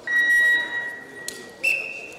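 Referee's whistle blown in one long steady blast of about a second and a half, restarting the wrestling bout. A second, higher-pitched whistle starts near the end.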